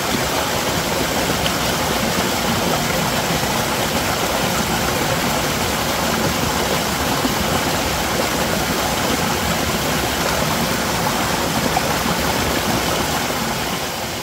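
Small mountain stream cascading over mossy boulders in several little falls: a steady, loud rush of water that fades slightly toward the end.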